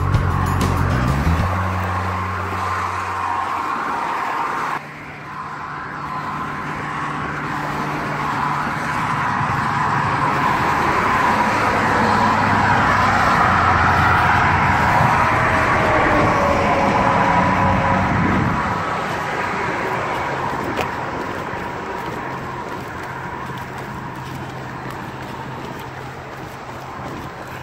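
Highway traffic running past close by, a steady rush of tyres and engines. It swells to its loudest in the middle and fades gradually toward the end.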